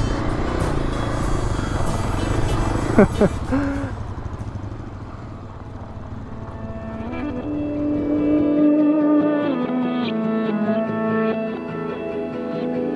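Dirt bike engine and trail noise from a motorcycle riding single track, which fades out about four seconds in. Background music with long held notes then takes over.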